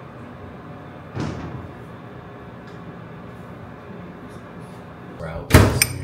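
Kitchen cabinet door knocking shut about a second in, then a much louder knock near the end.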